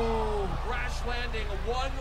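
A single long, falling vocal cry that ends about half a second in, followed by men talking, over a steady low hum.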